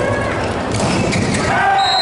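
Volleyball rally in a sports hall: the ball is struck hard at the net, with a couple of sharp smacks, then players shout as the point ends and a short, high, steady referee's whistle sounds near the end.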